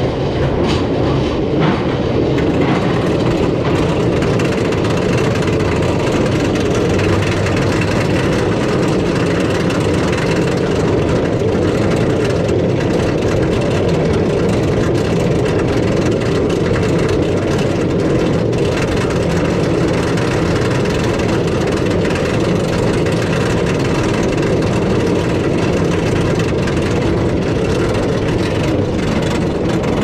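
Roller coaster train being hauled up a chain lift hill: a steady mechanical rattle and rumble from the lift and train, with a fast run of ticks, typical of anti-rollback dogs clicking over the ratchet.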